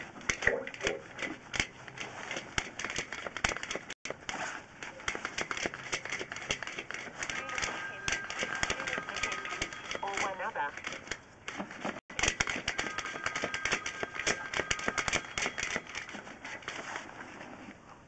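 Rapid, irregular clicking and scraping from a drain inspection camera's push rod and head being fed along a sewer pipe.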